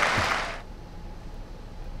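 Spectator applause fading out within the first half second, leaving a low, steady hall background.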